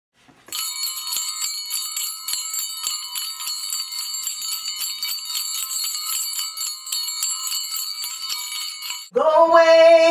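Small bells jingling continuously in a bright, high ringing, then a woman begins singing near the end.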